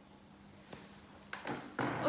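Near silence: quiet room tone with a faint steady hum and a small click about a third of the way in. A woman starts speaking right at the end.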